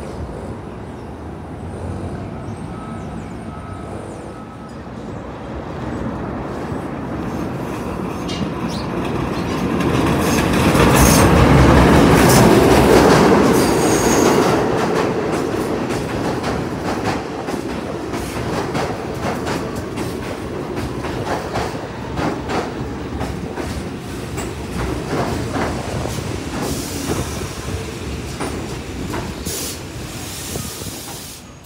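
Pullman-Standard R46 subway train approaching and pulling into the station. It grows louder to a peak as the cars pass close, roughly ten to fourteen seconds in, with thin wheel squeals on the curved track, then a run of rapid wheel clicks over the rail joints as it rolls along the platform.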